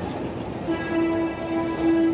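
Live band holding one steady note that comes in a little under a second in and carries on to the end.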